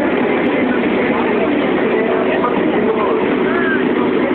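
Motorcycle engines idling among a chattering crowd, a steady, loud, mixed din.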